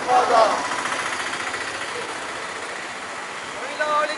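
Voices call out briefly at the start and again near the end. Between them a vehicle engine runs close by with a rapid, even pulse.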